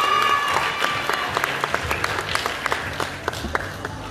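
Audience applauding, the claps thinning out and growing quieter toward the end.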